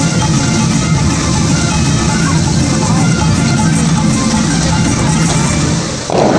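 Music playing over a musical fountain show's loudspeakers, mixed with the steady rush of the fountain's water jets.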